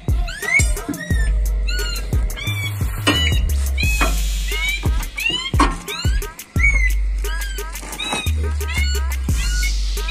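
Background music with a deep bass line and a string of short, high, swooping cries repeating over it.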